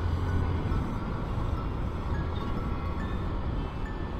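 Scooter riding along, with a steady low engine and road rumble.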